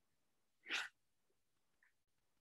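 A single short, breath-like burst of noise from a person on the call, about a third of a second long, a little over half a second in, followed by a faint blip near the end.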